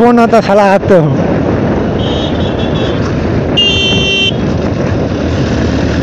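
Steady wind and road noise from a motorcycle riding at speed. A faint, stuttering high-pitched horn beep comes about two seconds in, and a louder, short, high-pitched horn blast follows about three and a half seconds in.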